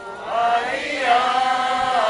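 A group of voices chanting together in unison, holding long sung notes, with no drums playing.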